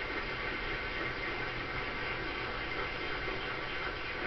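Steady hiss with a low hum underneath and no distinct event: the room tone and recording noise of a large hall.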